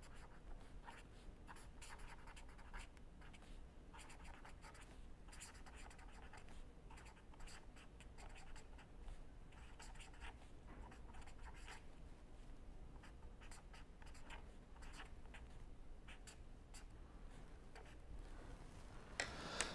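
Faint scratching of a pen on paper as a line of handwriting is written, in many short strokes.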